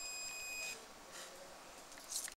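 CO2 laser marking machine giving a steady high-pitched tone while it marks a box lid. The tone cuts off suddenly under a second in, as the marking stops.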